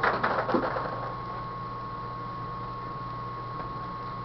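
Plastic paintball pod being handled and its flip lid popped open, a quick cluster of clicks and rattles of the paintballs inside in the first second. After that only a steady hum with a thin high whine.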